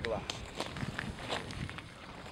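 Footsteps through grass: several soft, irregular steps, with the last of a man's spoken word at the very start.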